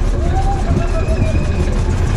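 Steady low rumble of a wild-mouse coaster car and its track machinery as the car rolls slowly toward the lift hill. Distant voices sound faintly over it.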